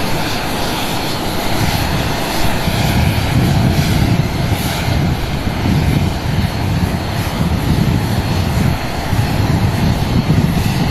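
Jet aircraft engines running steadily on the airfield: a constant whine over a low rumble. Wind buffets the microphone with an uneven low rumble.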